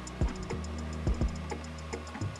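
Music with a steady beat: low thumps, about six in two seconds, and fast ticks about eight a second, over a low sustained tone.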